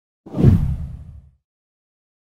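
A deep whoosh sound effect that swells in about a quarter second in, peaks at once and dies away within about a second.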